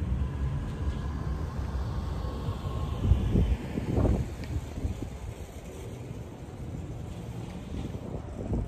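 Wind rumbling on an outdoor microphone, with two stronger gusts about three and four seconds in, over the faint hum of vehicles around a parking lot.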